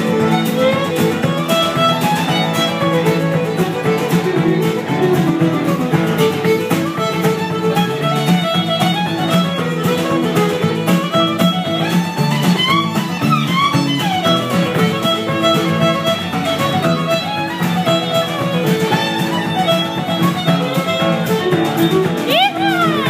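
Live string band music: a fiddle over strummed acoustic guitars, playing a tune at a steady beat.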